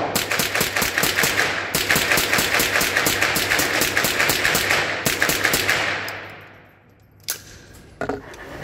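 Rapid string of .22 LR rifle shots, about five a second, from an AR-15-style rifle fitted with a CMMG .22 LR conversion kit, echoing in an indoor range booth. The shots die away about six seconds in, and one sharp click follows near the end.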